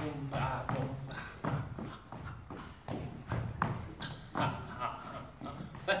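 Shoes stepping, hopping and kicking on a wooden floor in shag dance footwork: a quick, uneven run of footfalls, about two or three a second.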